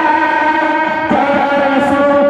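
Male voices singing a Bengali Islamic gojol (naat) together into microphones, holding long, slightly wavering notes and moving to a new note about a second in.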